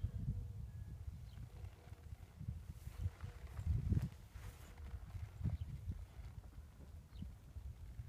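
A horse shifting its feet on soft dirt: a few dull hoof thuds, the strongest about halfway through, over a low steady rumble.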